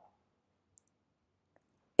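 One faint, brief computer mouse click a little over a third of the way in, in an otherwise quiet pause.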